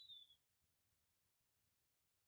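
Near silence: room tone, with a brief faint high tone that dips slightly in pitch right at the start.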